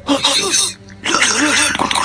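A young man's voice giving two loud, rough vocal bursts, a short one first and a longer one starting about a second in.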